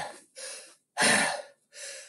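A man breathing hard: three heavy, gasping breaths, the middle one loudest. He is out of breath after a fast body-percussion routine.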